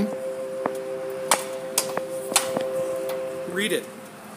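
A steady electrical hum, a low chord of a few tones, that stops shortly before the end, with several sharp clicks and taps over it.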